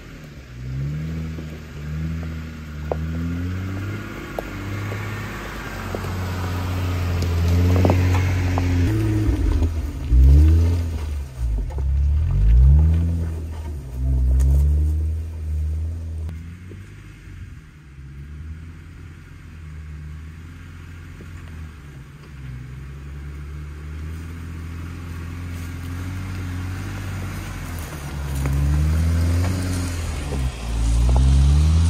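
Jeep Wrangler engine crawling up a steep, rocky trail in four-wheel-drive low range, first gear, its revs surging up and down as it climbs over rocks. The engine is loudest about ten to fourteen seconds in, eases off, then grows louder again near the end as the Jeep passes close.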